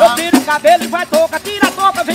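Two pandeiros, Brazilian frame drums with jingles, struck in a quick, steady embolada rhythm, with a voice singing over them.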